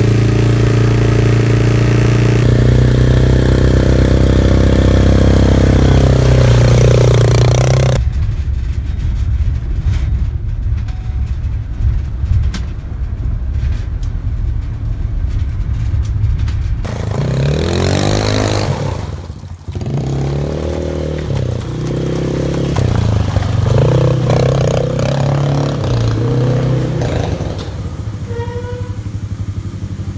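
Quad (ATV) engine idling steadily while it warms up after a hard restart, then engine noise on the move, its pitch rising and falling with the revs.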